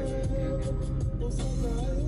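Music: a wavering melody line over sustained low bass notes.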